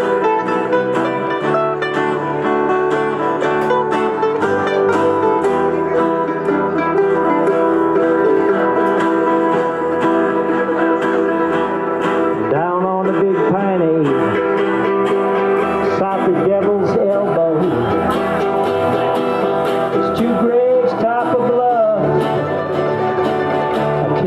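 Acoustic country-bluegrass band playing an instrumental break: fast mandolin picking over guitar and bass. About halfway through, a harmonica comes in with bent, wavering notes.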